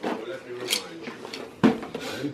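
Small die-cast toy cars and a plastic carry case being handled on a carpeted floor, giving two sharp knocks about a second apart, with faint voices underneath.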